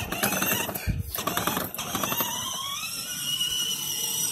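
Electric motor and plastic gearbox of a child's battery-powered ride-on toy Mercedes running as it drives on asphalt, rattling and clicking at first, then whining with a pitch that rises in the second half.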